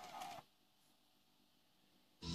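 Near silence: the car radio's output goes quiet as it switches from FM radio to the cassette source, with only a faint trace of sound in the first half second.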